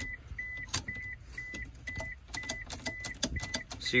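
A 1998 Honda Passport's warning chime beeping repeatedly with a short high tone, about two beeps a second, as it does with the key left in the ignition. Scattered light clicks and rattles come from the key and ignition lock being worked.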